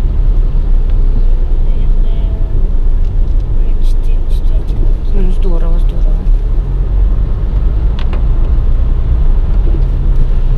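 Steady low rumble of road and engine noise heard inside the cabin of a moving car. A short, faint voice comes in about five and a half seconds in.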